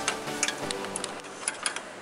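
Several light, sharp clicks of small plastic wiring-harness clips being worked off by hand, over faint background music.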